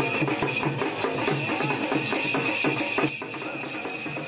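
Dhak, a Bengali barrel drum, beaten with sticks in a fast, dense, steady rhythm, with a steady high ringing over it.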